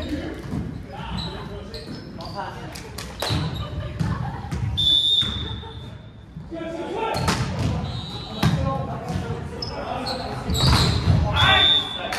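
Indoor volleyball rally echoing in a gym: players' voices calling out and sharp hits of the ball. A referee's whistle gives one long blast about five seconds in and a short blast near the end.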